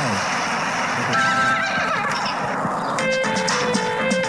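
Mobile puzzle game audio: a loud, noisy sound effect for about three seconds, then game music of short repeated notes starting about three seconds in as the level changes.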